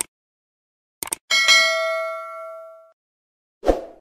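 Subscribe-button sound effect: sharp mouse clicks, then a notification bell ding that rings out and fades over about a second and a half, followed by a short burst near the end.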